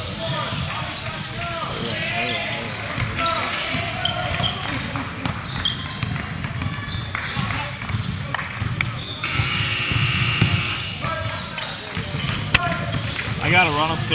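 Basketball bouncing on a hardwood gym floor as it is dribbled, over the chatter and calls of players and spectators.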